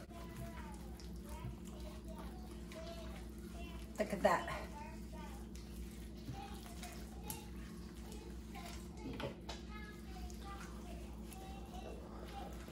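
Faint voices in the background, a child's among them, over a steady low hum, with a brief louder sound about four seconds in and a smaller one near nine seconds.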